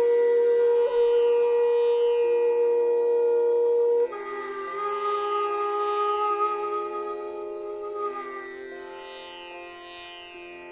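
Hotchiku, a bamboo end-blown flute of the shakuhachi type, playing a long, loud, breathy held note that ends abruptly about four seconds in. A softer, higher held phrase follows and fades toward the end.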